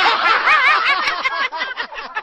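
Several men laughing loudly together, overlapping bursts of hearty laughter.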